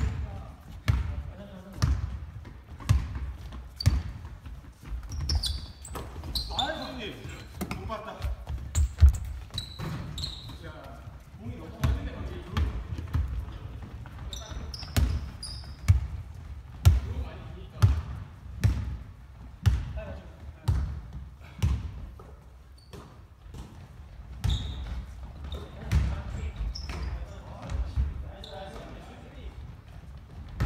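Basketball dribbled on a hardwood gym floor: a steady run of sharp bounces, about one a second, echoing in a large hall.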